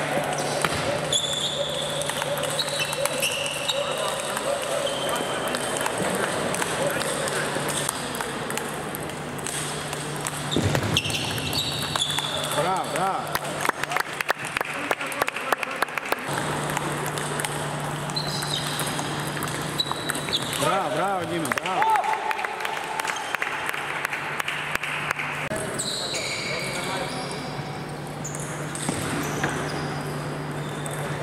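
Table tennis ball clicking off rackets and the table in quick exchanges, with more clicks from play at other tables in a large, echoing sports hall. Voices in the hall and a steady low hum run underneath.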